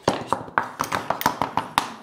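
Quick, irregular tapping and clicking, about a dozen knocks in two seconds, as the small aluminium legs of an acrylic demagnetizer assembly are stepped across a wooden workbench.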